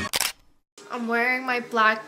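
Background music cut off by an edit with a short click, a brief silence, then a woman's voice speaking for the rest.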